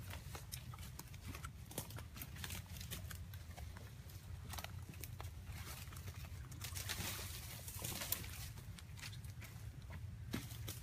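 Footsteps crunching through dry leaves and brush, with scattered crackles of leaves and twigs, a stretch of heavier rustling about seven seconds in, and a steady low rumble underneath.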